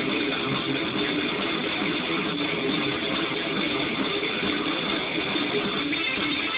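Distorted electric guitar playing a dense metal passage at a steady level.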